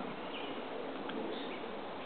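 Quiet outdoor background: a steady low hiss with a few faint, brief high chirps from distant small birds.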